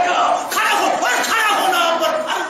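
A man preaching in a loud, raised, impassioned voice, with no pause.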